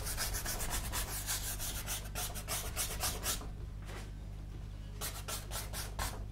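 Paintbrush scrubbing paint onto a painting surface in quick, repeated strokes for about three seconds, then a pause and a few more strokes near the end.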